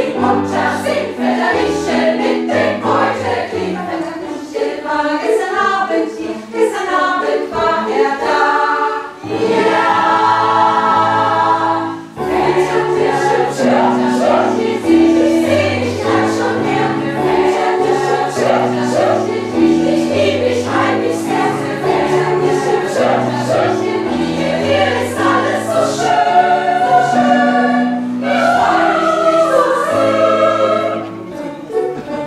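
A mixed choir of women's and men's voices singing a rhythmic song in harmony, with a low bass part beneath the upper voices.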